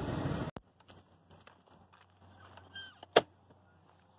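Steady noise of a freight train passing a level crossing, heard from inside a vehicle, cut off abruptly about half a second in. Then quiet, with scattered small clicks and one sharp loud click about three seconds in.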